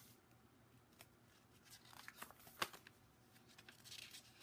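Faint paper rustling and a few soft clicks as art-journal pages are handled and turned, the clearest about two and a half seconds in.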